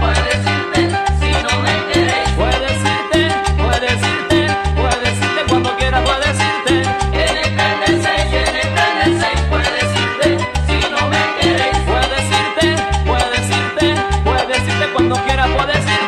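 Instrumental Latin dance music from a Canarian dance orchestra, with a steady, repeating bass line and no singing.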